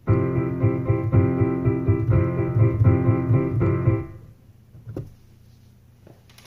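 Digital piano played with both hands: chords and notes that start abruptly, ring on for about four seconds, then fade out. A short soft knock follows about a second later.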